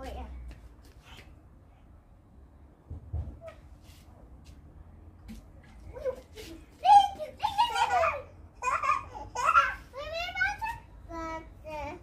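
Young children's high-pitched voices, babbling and calling out without clear words, starting about six seconds in, over a low steady rumble.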